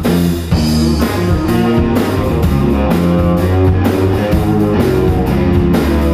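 Blues-rock band music: guitar over drums and bass, playing steadily.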